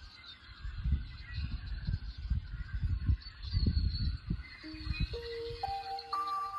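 Outdoor ambience of faint high chirps with irregular low rumbles like wind on the microphone. A slow melody of held notes begins about four and a half seconds in.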